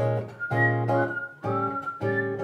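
Acoustic guitar strumming chords in a steady rhythm, with a whistled melody in long held notes above it.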